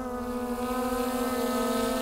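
Skydio 2 quadcopter drone's propellers running with a steady hum, growing gradually louder as the drone flies in closer.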